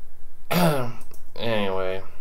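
A man clears his throat about half a second in, then makes a drawn-out wordless vocal sound at a steady pitch near the end.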